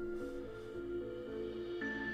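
Background music: a soft, held synth chord that shifts to a new chord near the end.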